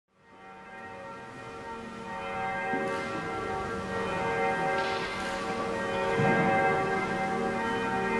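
Church bells ringing, many tones overlapping and hanging on, fading in over the first second and growing steadily louder.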